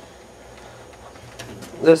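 Faint, steady background room tone with no distinct sound, then a man's voice begins near the end.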